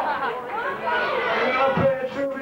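Crowd chatter in a club between songs: several voices talking over one another, with no music playing.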